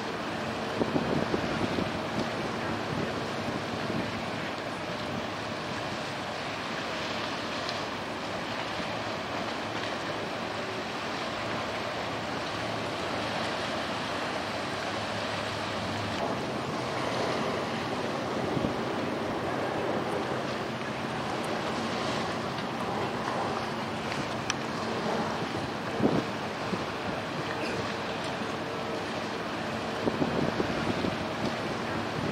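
Steady wind buffeting the microphone over river water, with the low, steady hum of a small workboat's engine running as it holds against the mooring pontoon. A few brief knocks, the sharpest near the end.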